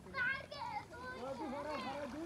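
Several voices chattering and calling at once, many of them high-pitched children's voices.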